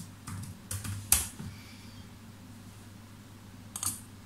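Typing on a computer keyboard: a quick run of keystrokes in the first second or so, the last one the loudest, then a pause and a couple more keystrokes near the end.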